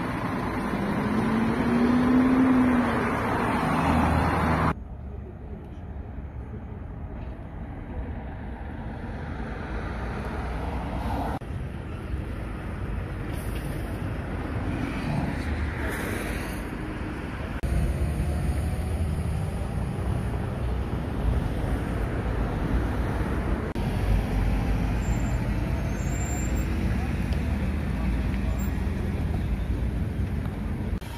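Roadside traffic noise with voices in the background. The sound changes abruptly several times as the footage cuts between shots.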